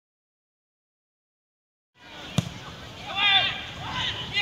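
Complete silence for about two seconds, then outdoor sound from a football pitch cuts in: one sharp knock and players' voices shouting.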